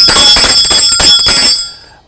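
Small brass hand bell shaken rapidly, its clapper striking many times in quick succession with a bright, high ringing, dying away about a second and a half in. It is the bell rung to signal the close of trading for the day.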